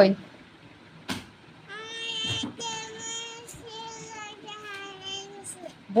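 Soft singing in a high, child-like voice: a string of held notes lasting about three and a half seconds, after a single sharp click about a second in.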